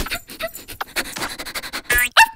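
Cartoon puppy's voiced dog sounds: a run of quick, short panting breaths.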